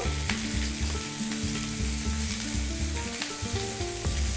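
Chicken legs frying in hot oil in a pan, a steady sizzle, with low sustained tones underneath.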